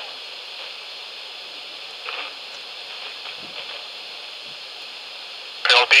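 A steady, even hiss with no clear events, broken only by a faint short sound about two seconds in.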